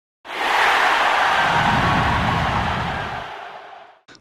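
A loud rush of noise that starts a quarter second in and then fades away steadily over the last second and a half.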